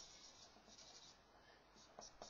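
Faint strokes of a marker pen on a whiteboard.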